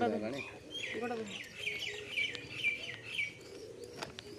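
A bird singing a quick run of about eight short, repeated falling notes, starting about a second and a half in and lasting under two seconds.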